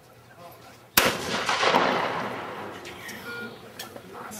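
A single trap shotgun shot about a second in, sharp and loud, followed by a noisy wash with voices that fades over about two seconds; a smaller crack comes near the end.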